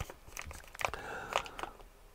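Plastic packet of mosquito-repellent refill pads being handled and turned over, its wrapping crinkling faintly, with a few scattered short crackles.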